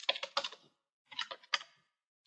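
Keystrokes on a computer keyboard: two short bursts of typing clicks, one at the start and one about a second in.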